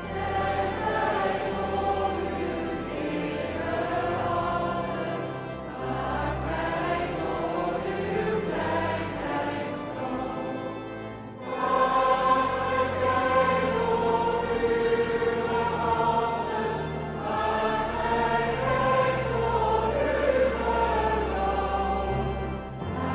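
Choir and congregation singing a Dutch Christmas hymn in unison with orchestral accompaniment. The singing grows louder about halfway through.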